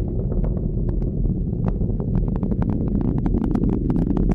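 Low, steady rumble of a SpaceX Falcon 9 first stage's nine Merlin engines in ascent, laced with rapid sharp crackling that grows denser near the end.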